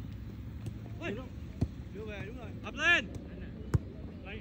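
Soccer players shouting short calls across the field, with two sharp thuds of the ball being kicked, one about one and a half seconds in and a louder one near the end.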